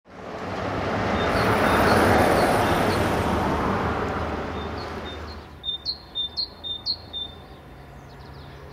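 A road vehicle passes by, its noise swelling and fading over the first five seconds, while a small bird chirps repeatedly; a run of louder chirps comes in the second half.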